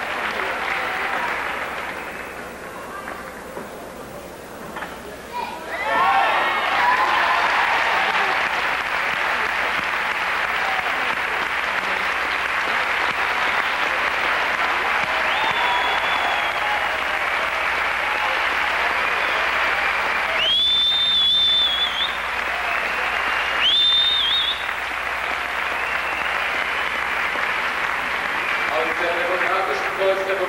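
Arena crowd applauding a gymnast's vault. The applause swells sharply about six seconds in and then holds steady, with two shrill whistles from the crowd in the second half.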